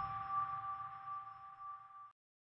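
The closing chime of an intro music sting: two steady ringing tones held and slowly fading, with the low music underneath dying away.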